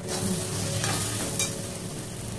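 Long metal spatula stirring and scraping a thick egg, green banana and potato mash around a steel kadai, with the mixture sizzling in the pan over a lowered gas flame. A couple of sharper scrapes come near the middle.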